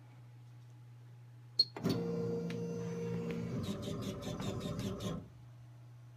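Laser cutter's stepper motors driving the head gantry: a short click about one and a half seconds in, then a steady whine with several tones for about three seconds, with a run of rapid clicks near its end, before it stops. A low steady hum runs underneath throughout.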